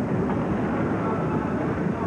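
Steady rumble of roller skate wheels on the banked track mixed with arena crowd noise.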